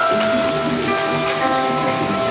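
Show soundtrack music with long held notes, playing over a steady hiss of spraying water fountains.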